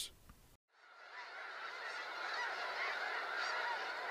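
A large flock of geese calling, a dense chorus of many overlapping calls that fades in about a second in and builds to a steady level.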